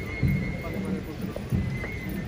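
Processional brass band playing a march behind a Holy Week palio, with low brass and drum beats, over crowd voices.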